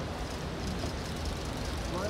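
Outdoor street ambience: a steady low rumble of vehicle traffic and idling engines with faint, indistinct voices.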